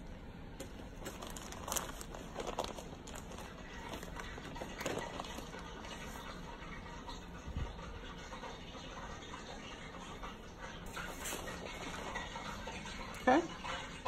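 A deep fryer running in the background, a steady even hiss, with a few faint ticks and rustles over it.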